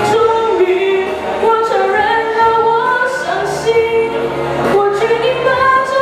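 A girl's voice singing a Chinese pop song into a handheld microphone, holding notes and moving smoothly between pitches.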